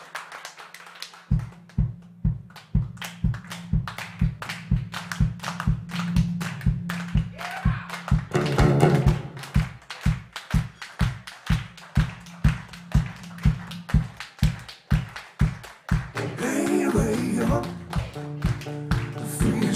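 Live one-man-band percussion: a steady deep thudding beat, about three a second, kicks in about a second in, with sharp clicks between the beats. A short voiced phrase comes midway and a held chord comes near the end.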